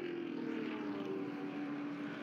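Muscle race car's engine running, its note falling slowly and steadily as the car slows after going off the track.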